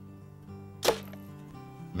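Arrow striking a life-size 3D deer target: a single sharp thwack just under a second in, over soft background guitar music.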